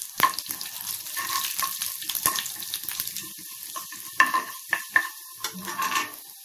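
Cumin seeds sizzling in hot oil in a pan, stirred with a spatula, with several sharp taps of the spatula against the pan.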